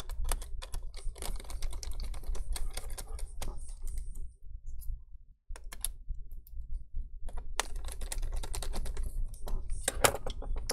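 Quick small clicks and taps of a precision screwdriver and fingers working on small screws and parts inside an open laptop, broken by a moment of silence about halfway through.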